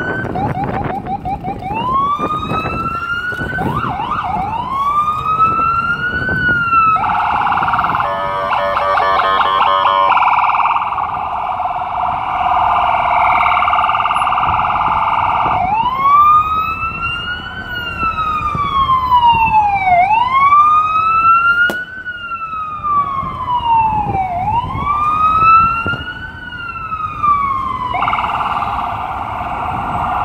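FDNY EMS ambulance electronic siren switching between modes: rising wail sweeps, a few seconds of fast rapid warble, a long steady horn-like tone, then slow wail sweeps rising and falling about every two seconds, with another steady tone near the end. Idling city traffic sits underneath.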